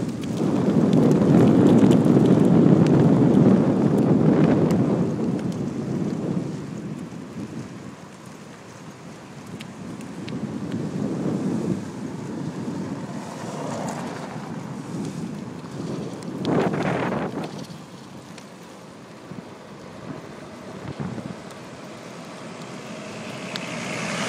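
Wind buffeting the microphone of a camera carried on a moving bicycle: a gusty, toneless rush, loudest in the first few seconds and then easing. There is a brief louder rush about two-thirds of the way through, and the noise swells again at the very end.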